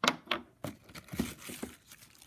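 Handling noise: a few light knocks and clicks with paper rustling as small wooden toy pieces are moved about among tissue paper. The sharpest knock comes right at the start.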